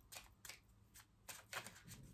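A deck of tarot cards being shuffled by hand: faint, irregular soft clicks as the cards knock and slide against each other.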